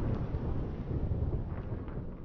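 The tail of a channel-logo intro sound effect: a low rumbling noise that slowly dies away.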